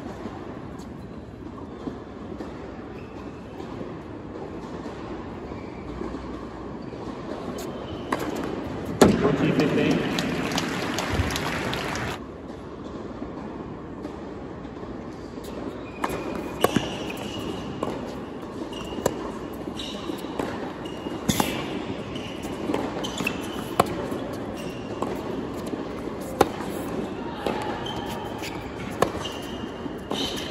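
Tennis ball strikes and bounces on a hard court during rallies. A short burst of audience applause swells about nine seconds in and stops at about twelve seconds. From about sixteen seconds, another rally gives sharp racket hits every two seconds or so.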